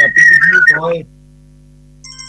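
A high, wavering feedback whistle over a person's voice on a radio phone-in line; it stops about three-quarters of a second in, and the voice stops soon after. A low steady hum fills the rest.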